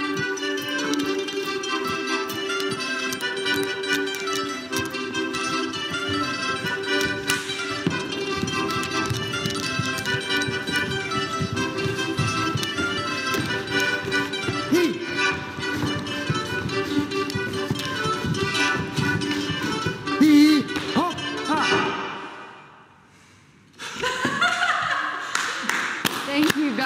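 Lively folk dance music for a Ukrainian hopak, with dancers' boots stamping and tapping on a wooden floor. The music fades out about 22 seconds in, and after a short quiet gap voices come in near the end.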